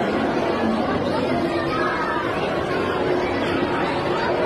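Crowd chatter: many overlapping voices of a large gathering of onlookers, steady throughout.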